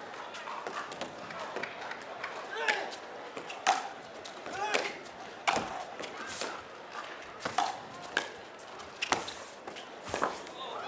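Paddles striking a plastic pickleball in a fast singles rally: a string of sharp hits about once a second.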